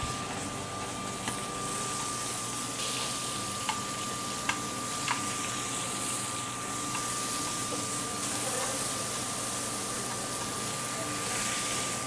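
Venison loin searing in hot olive oil in a skillet: a steady sizzle, with a few light clicks of metal tongs against the pan in the first half and a faint steady whine underneath.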